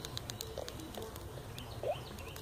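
Quiet outdoor background with a few soft bird calls, the clearest a short rising call near the end.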